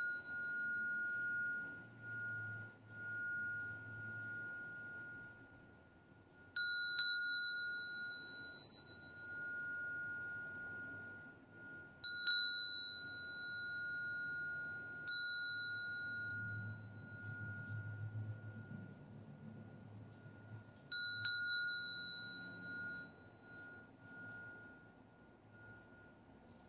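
Brass Tibetan hand bell (ghanta) rung four times, each strike giving a bright clang and a long, steady ringing tone that fades slowly. The ring from a strike just before carries on at the start.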